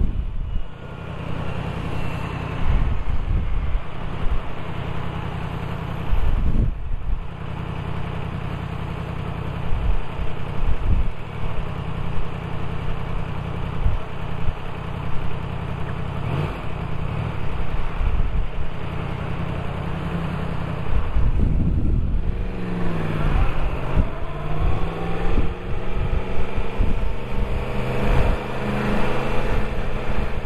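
Motorcycle engine idling steadily while stopped, then revving up about 22 seconds in as the bike pulls away, the pitch rising in several climbs toward the end.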